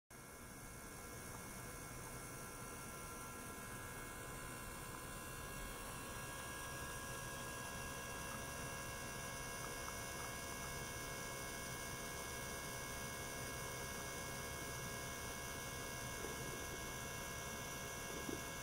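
Steady electrical hum from running ultrasonic test equipment, with several thin, unchanging high tones layered over it. It fades in over the first couple of seconds.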